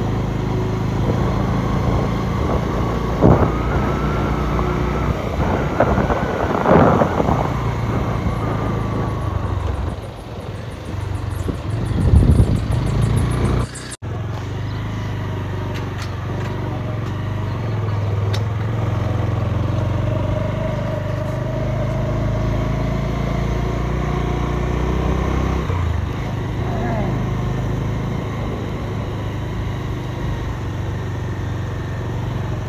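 A road vehicle's engine running steadily as it drives along a village road, with voices over it in the first half. The sound breaks off abruptly about halfway through, then the engine carries on.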